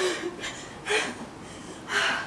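A woman's hard breathing during exercise, short forceful breaths about once a second.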